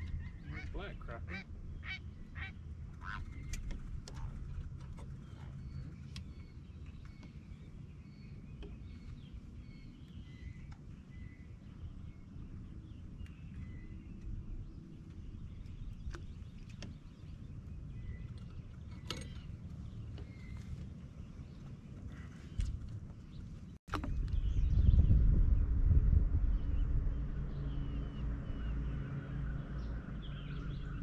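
Faint repeated bird calls over a steady low rumble of wind on the microphone, with a few sharp clicks near the start. After a cut about 24 seconds in, the low rumble is much louder.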